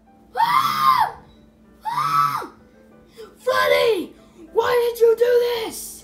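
A voice screaming four times, each scream loud, about half a second to a second long and falling in pitch at its end.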